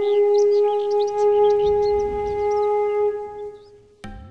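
Bansuri (bamboo flute) music holding one long low note with short high chirps above it, fading out near the end.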